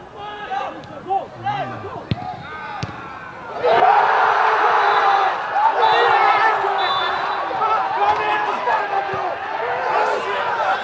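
Players' voices calling out on a football pitch with a couple of sharp ball kicks. About four seconds in, many voices break into loud, sustained shouting.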